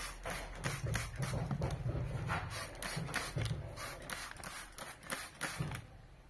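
Trigger spray bottle pumped in quick repeated squirts onto a fabric headrest, about three sprays a second, with a low rumble underneath in the first half.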